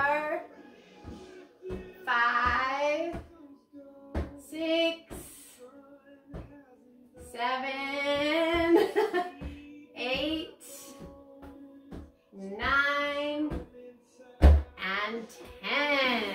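A woman and a girl hitting an air-filled balloon back and forth. Their voices exclaim and laugh in long, drawn-out, rising and falling cries. Short taps come from the balloon being struck, and there is a louder thump about a second and a half before the end.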